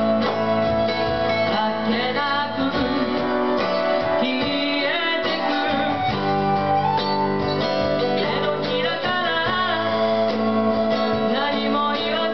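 Live band music: strummed acoustic guitar and electric guitar, with a flute (笛) melody sliding between notes above them.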